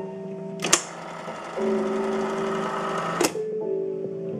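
Seeburg 3W5 wallbox's selection mechanism running: a click, then an even mechanical whirr for about two and a half seconds, ending in another click. Piano-led music plays from the speakers under it.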